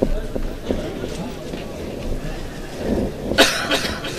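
Indistinct talk of several people close by, with a loud cough about three and a half seconds in.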